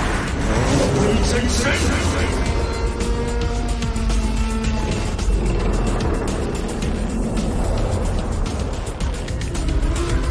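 Dramatic animation soundtrack: background music with held notes over a heavy, continuous low rumble of battle sound effects.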